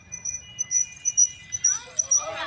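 Crickets chirping: a short high chirp repeating about four times a second.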